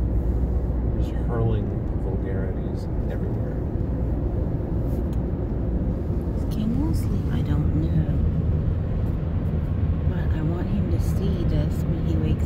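Steady engine and road noise inside a moving van's cabin, a low rumble throughout, with faint, indistinct talk now and then.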